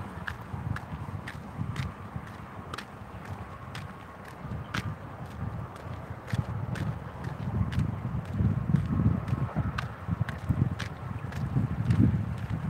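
Footsteps on a concrete road at a steady walking pace, about two steps a second, with wind buffeting the microphone and growing louder in the second half.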